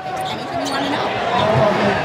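A basketball being dribbled on a hardwood court, with steady arena crowd noise.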